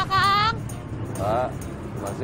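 Two short, wordless, voice-like sounds whose pitch wavers and bends, one at the start and a shorter one past the middle, over a low steady rumble of street traffic.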